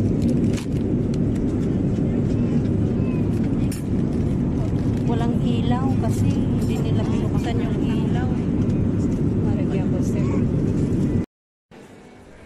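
Steady low drone of an airliner cabin in flight, with a few light clicks of tray items being handled. It cuts off suddenly near the end.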